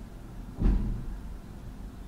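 A single brief low thump about half a second in, over a steady low background hum.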